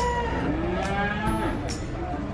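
Javanese cattle (sapi Jawa) mooing, the calls sliding up and down in pitch. Sharp ticks recur about once a second.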